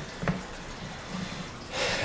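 A short pause in a man's talk: faint room noise with a small click about a quarter second in, then a quick breath in near the end before he speaks again.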